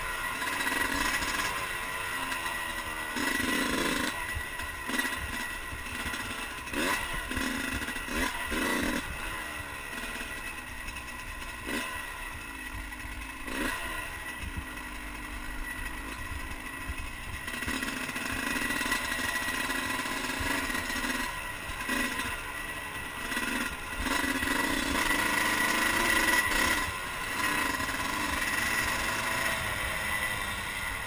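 Dirt bike engine running while being ridden off-road, its pitch rising and falling over and over with throttle changes, with scattered knocks and rattles from the bike on the rough trail.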